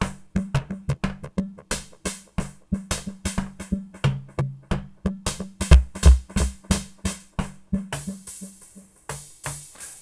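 Analog drum machine playing a rhythm through an Ace Tone EC-20 tape echo, each hit trailed by tape-delay repeats so the pattern sounds dense and busy. The deepest bass-drum hits come about six seconds in, and brighter, hissier hits near the end.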